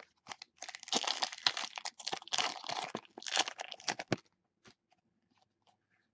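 Foil trading-card pack wrapper being torn open and crinkled, dense crackling for about three and a half seconds, then a few light taps as the cards are handled.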